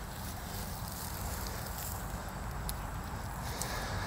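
Faint rustling and crumbling of dry coco-coir potting soil as hands break apart a dumped-out bucket clump, over a steady low background hum.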